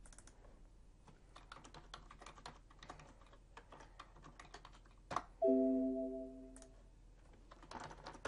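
Computer keyboard typing and mouse clicks, light and scattered. About five seconds in, a short computer alert chime sounds and fades out over about a second and a half.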